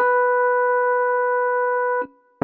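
One sustained note in the middle register, played on a synthesizer workstation keyboard. It is held steady without fading for about two seconds, then released abruptly.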